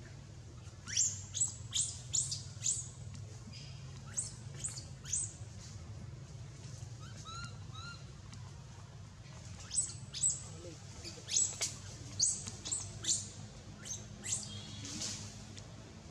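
Runs of short, high-pitched upward-sweeping chirps from a small animal, about five in quick succession near the start, three more a few seconds later, and a longer run in the second half, over a steady low hum.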